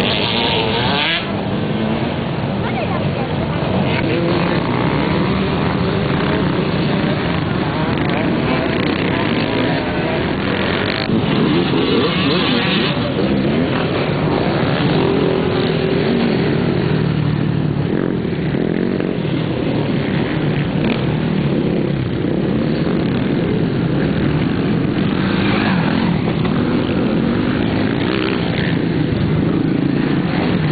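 Off-road motorcycle (dirt bike) engines running and revving on a race course, their pitch rising and falling as riders work the throttle.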